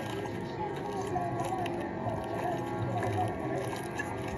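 A horror short film's soundtrack playing through a tablet speaker: quiet, steady background music.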